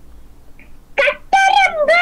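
A child's high-pitched voice calling out in long, drawn-out syllables, starting about a second in after quiet room tone.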